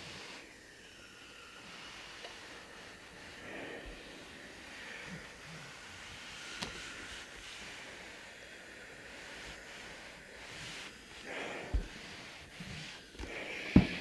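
Household iron sliding over cotton fabric on a wool pressing mat: a faint, soft swishing rustle. Near the end come two dull knocks, the last as the iron is set down.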